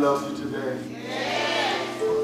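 A person's voice, drawn out and wavering, over steadily held chords from a keyboard instrument.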